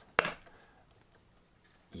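A single sharp tap or click about a fifth of a second in, from a graphics card and its plastic fan shroud being handled.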